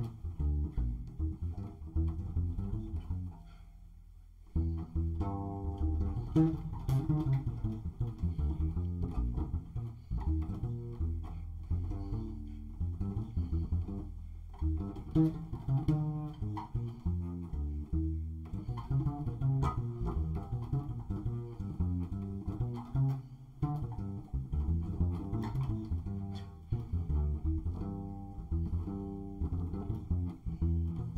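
Upright double bass played pizzicato, a continuous line of plucked notes, with a brief lull about three to four seconds in.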